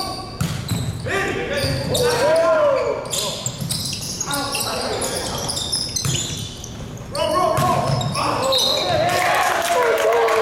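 Volleyball rally in a large gym: the ball is served and struck again and again with sharp slaps, while sneakers squeak on the hardwood floor and players shout, all echoing in the hall.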